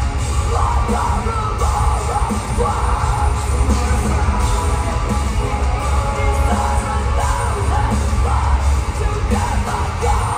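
Metal band playing live through a large hall's PA: distorted guitars, drums and heavy bass with a vocalist over them, loud and bass-heavy as heard from the crowd.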